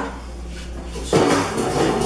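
Stainless steel sink bowl handled and shifted on the countertop: a sudden metallic scrape and clatter about a second in.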